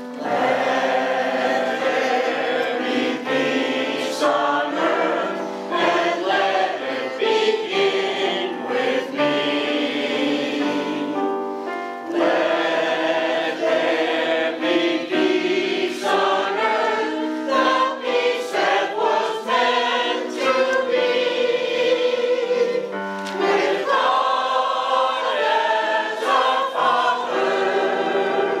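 Mixed choir of men's and women's voices singing together with digital piano accompaniment, the voices coming in right at the start after a piano-only introduction.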